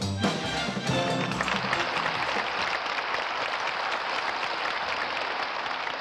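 Brass-band music that ends about a second and a half in, followed by audience applause.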